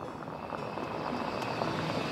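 Engine noise of an approaching car, a steady rushing sound that grows slightly louder as the car draws near.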